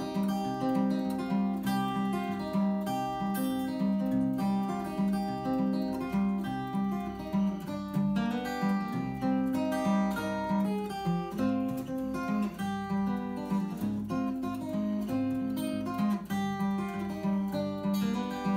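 Acoustic steel-string guitar strummed in a steady rhythm, an instrumental break between sung verses.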